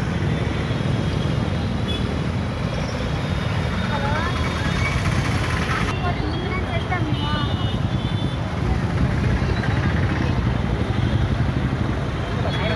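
Steady low rumble of street traffic and vehicle engines, with scattered faint voices of people talking.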